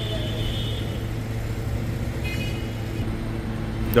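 Steady low machinery hum, unchanging throughout, with a faint high whine early on and another briefly about halfway through.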